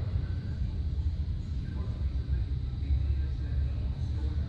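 Steady low rumble of room noise in a large hangar, with faint voices talking in the distance.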